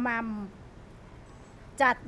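A woman speaking Thai: one drawn-out, falling syllable, a pause of about a second and a half with only low room tone, then speech resumes near the end.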